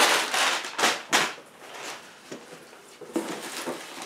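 Crumpled brown packing paper crinkling and rustling as it is handled, in a few loud bursts over the first second or so. This is followed by softer rustling as hands rummage in a cardboard box near the end.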